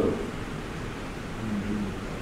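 A pause in a man's speech through a microphone: steady hiss and room noise, with the end of a spoken word at the start and a faint, short hum of his voice shortly before the end.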